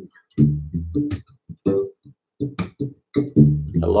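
Electric bass played palm-muted: a run of short, damped low notes with percussive ghost notes between them, felt as a sixteenth-note subdivision of the beat, with two brief pauses.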